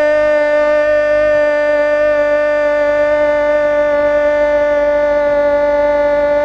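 A radio football commentator's long held goal shout, one loud, steady high note of the voice sustained without a break, the drawn-out 'gol' of a goal call.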